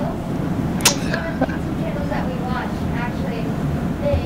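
Faint speech from an audience member away from the microphone, over steady room noise, with a sharp click about a second in.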